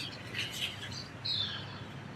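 Birds chirping, with a falling chirp about two-thirds of the way through, over a steady low background hum.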